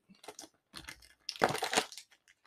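Packaging being torn and crinkled open by hand: a few small crackles, then a louder stretch of tearing and rustling in the second half.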